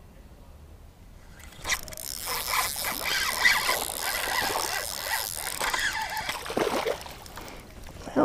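Loud rustling and scraping of a jacket sleeve rubbing over the camera's microphone. It starts about a second and a half in, runs for several seconds with scattered sharp clicks, and eases off near the end.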